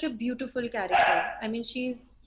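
A woman talking, with a louder, rougher outburst about a second in.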